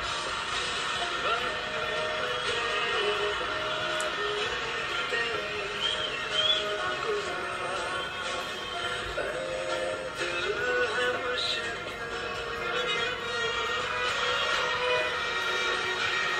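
Music from the dance performance playing steadily: a melody moving between held notes over a sustained backing.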